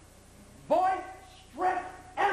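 A raised, shouting voice in two short, high-pitched calls about a second apart, the strained pitch bending within each call.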